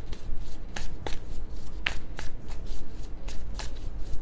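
A deck of tarot cards being shuffled by hand: a run of quick, irregular card clicks and slides.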